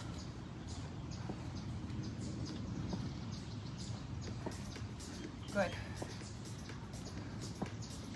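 Quiet outdoor background: a steady low hum with faint, short high bird chirps scattered throughout. A woman's voice says "Good" once, a little past the middle.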